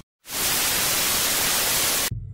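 A loud, steady burst of static-like hiss, used as a transition sound effect. It starts just after a split second of silence and cuts off suddenly at the end.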